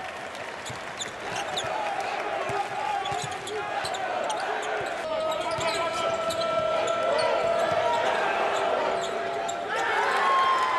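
Basketball game sounds in a large arena: the ball bouncing on the hardwood and sneakers squeaking on the court, over the hum of a crowd. Partway through, a steady held tone joins the crowd noise and the sound gets louder.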